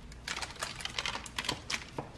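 Kitchen knife cutting down through a slab of brownies topped with hard sprinkles, on parchment paper: a quick, irregular run of small crisp clicks and crackles.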